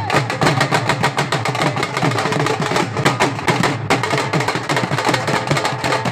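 Several dhols beaten together in a bhangra rhythm: a dense, rapid run of sharp stick strokes over low booming beats on the bass heads.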